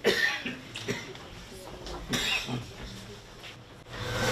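Audience members coughing and clearing their throats a few times in a hall. The first cough, right at the start, is the loudest, and smaller ones follow about one and two seconds in.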